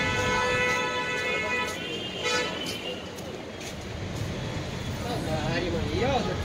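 A vehicle horn sounding one held blast of about two seconds, then a shorter toot, over a steady rumble of street traffic, with voices near the end.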